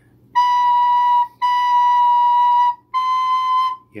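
Recorder sounding high D, the note played with the thumb hole uncovered: three steady held notes at the same pitch, each about a second long with short breaks between.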